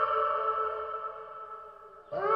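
Wolf howling: the tail of one long held howl that dips slightly in pitch at the start, then fades away.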